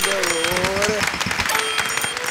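Studio audience and judges clapping, with a voice holding a wavering note over the applause.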